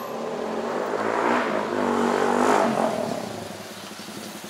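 A loud motorcycle engine passing close by, getting louder to a peak about two and a half seconds in and then fading as its pitch drops.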